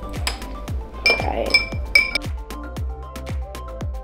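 A metal spoon stirring liquid in a footed glass dish and clinking against the glass, three ringing clinks about a second in, each about half a second apart. Background electronic music with a steady beat plays throughout.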